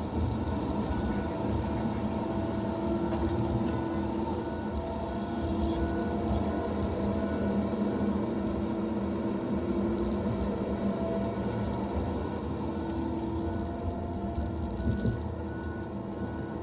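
Tigercat LX870D feller buncher running steadily, heard from inside its cab: a low engine rumble with a hydraulic and saw-head whine made of several held tones, rising and easing slightly as the felling head works the logs.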